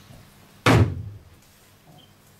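A single loud thump just over half a second in, followed by a short low boom: a hand striking the wooden pulpit close to its microphones.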